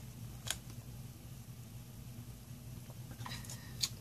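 A steady low hum, with one sharp click about half a second in and a few faint small clicks and a tap near the end.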